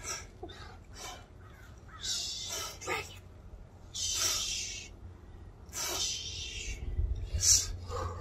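Sharp, hissing exhaled breaths, one short burst about every one and a half to two seconds, in time with a quick twisting exercise done with a weight held at the chest. A low rumble rises near the end.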